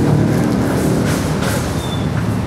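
Steady traffic noise: a vehicle engine running nearby, a continuous low hum under a haze of road noise, swelling a little about a second in.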